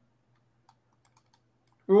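Near silence broken by a few faint, scattered clicks, then a man begins speaking just before the end.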